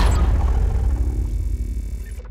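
Cinematic logo-reveal sound effect: a deep, low rumble that slowly fades out.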